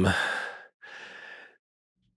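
A man's hesitant "um" trailing off into a breathy sigh, followed by a second, quieter breathy exhale.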